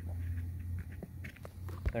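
A steady low hum runs throughout, with a few light clicks and a knock near the end as rubber-booted multimeter test leads are handled in a tool case.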